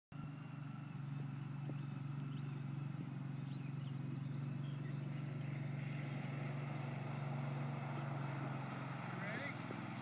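Husqvarna HUV4414 utility vehicle's engine running at a distance, a steady low drone as it drives along a muddy track.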